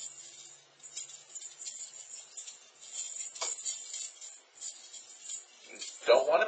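Faint, scattered light jingles and clinks of a small bell toy being shaken, with one sharper click about three and a half seconds in.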